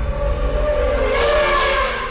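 Logo-intro sound effect: a swelling whoosh with a wavering tone, building to a peak about one and a half seconds in and then starting to fade.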